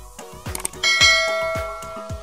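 A bright bell chime sound effect rings out just under a second in and slowly fades. It plays over background dance-pop music with a steady beat. The chime is the stock "ding" of a YouTube subscribe-and-notification-bell animation.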